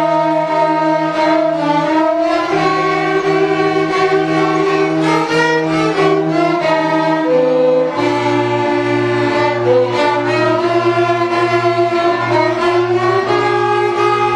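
Children's string ensemble of violins playing a slow piece together in held notes, with a lower bass line beneath the melody that steps down to a deeper note about eight seconds in.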